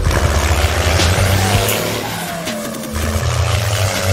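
A vehicle engine revs and strains as it tows a load through mud, with a low rumble and skidding wheel-spin, over background music.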